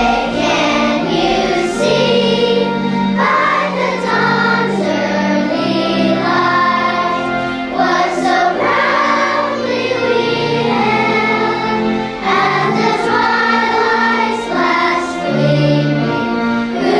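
A children's choir of first graders singing the national anthem in unison over held instrumental backing notes.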